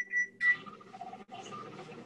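Three short electronic beeps at one high pitch in quick succession, followed by a faint steady hum from an open microphone.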